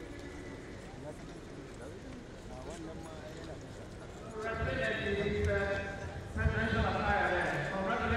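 Crowd of people talking and calling out, a low murmur that grows much louder about halfway through, with several voices raised at once.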